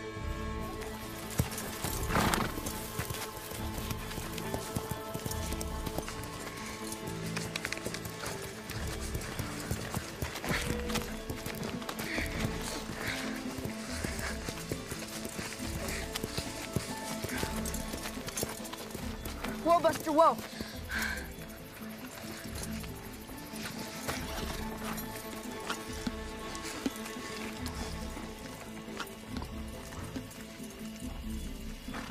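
Film score music with horses' hooves clip-clopping, and a horse whinnying about twenty seconds in.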